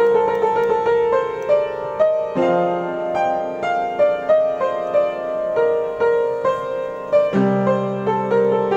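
Piano improvisation on a street piano: a melody of struck single notes over held low chords, the bass changing about a third of the way in and again near the end.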